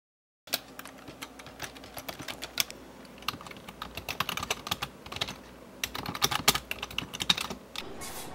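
Typing on a computer keyboard: irregular runs of key clicks that start about half a second in and go on with short pauses.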